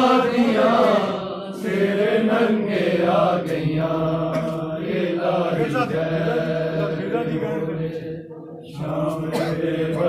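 Men's voices chanting a Punjabi noha, a Shia lament, in long, melodic held lines. The chant dips briefly about eight seconds in, then picks up again.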